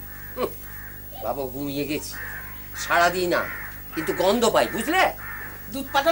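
People talking, with a bird calling in the background.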